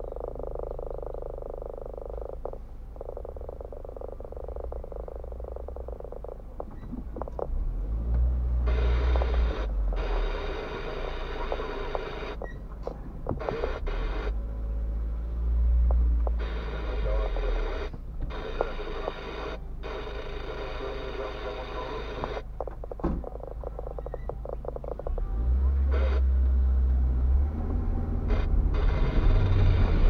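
Car cabin noise picked up by a dashcam as the car moves slowly over a rough dirt road: a low engine and tyre rumble that swells several times, loudest near the end as the car drives off.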